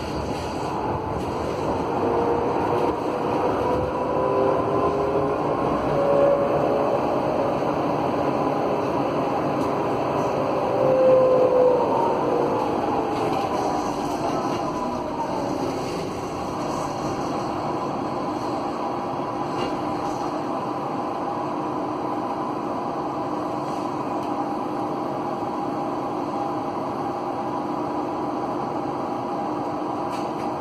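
Whine of an AEG GT8N tram's original GTO traction inverter and its traction motors, heard from inside the car over the rolling noise on the rails. Several whining tones glide upward, then slide down around the middle and settle into a steady hum for the rest of the time.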